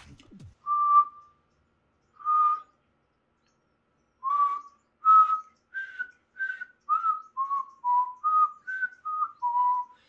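Mouth whistle made with the tongue pressed against the roof of the mouth, the beatbox "recorder whistle": two separate held notes in the first few seconds, then a quick run of about a dozen short notes stepping up and down like a little tune.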